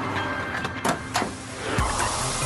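Soft background music with two short clicks about a second in. Near the end a steady rushing hiss of corn kernels pouring from a chute begins.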